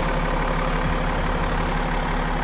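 BMW X6 xDrive40d's 3.0-litre twin-turbo straight-six diesel idling, heard from the open engine bay. The idle is steady and even, the sign of a smoothly running engine.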